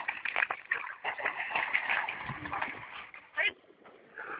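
People's voices talking over the sounds of dogs moving about and splashing at the water's edge, with a short sharp high sound about three and a half seconds in.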